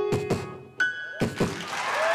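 Grand piano notes with about five sharp beatboxed percussion hits, kick-like thumps from a voice into a microphone, laid over the playing.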